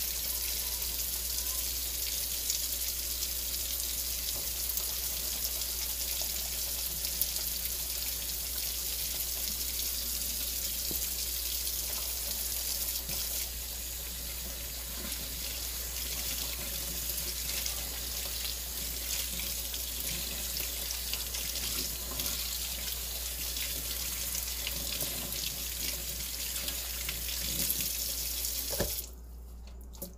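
Kitchen faucet running steadily into a metal sink while lathered shoelaces are rinsed by hand under the stream. The water shuts off suddenly near the end.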